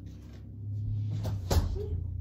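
A front door being handled: movement noise builds, then there is a sharp clunk about one and a half seconds in.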